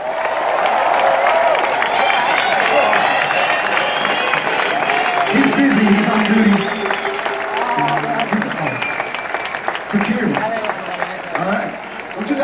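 Concert audience applauding and cheering after a band member is introduced, with the band playing underneath.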